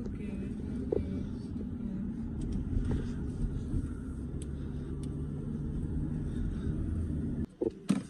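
Road noise inside a moving car's cabin: a steady low rumble of engine and tyres, which cuts off abruptly near the end.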